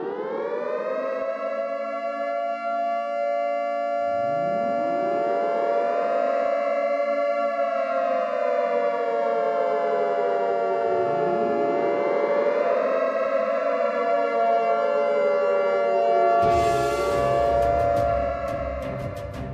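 Air-raid siren wailing: each wail rises over a couple of seconds and then falls slowly, with new wails starting about four seconds in and twice more so that they overlap. Near the end a burst of noise with low pulses and clicks cuts in over it.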